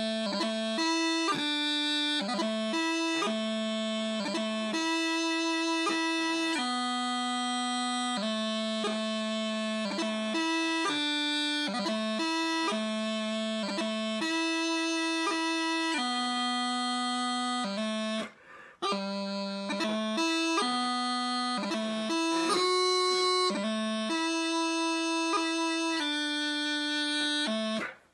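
Bagpipe practice chanter playing a pibroch taorluath breabach variation in an even, round timing: steady melody notes broken by quick grace-note flicks, with no drone. The playing stops briefly for breath about eighteen seconds in and ends just before the close.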